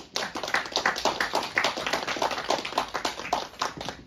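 Small audience applauding: a quick run of separate hand claps that thins out and dies away near the end.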